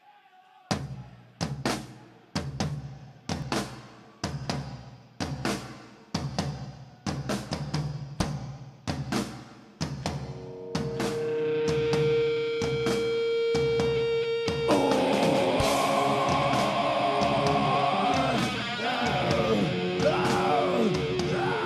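Heavy metal band playing live: slow, heavy drum-kit strikes about once a second open the song, a long held note joins about halfway through, and the full band with distorted guitars comes in near fifteen seconds.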